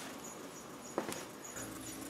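Quiet room tone with a single faint click about halfway through.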